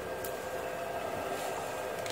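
Steady background hiss with a faint hum, the room tone of a workbench, with one faint tick about a quarter second in.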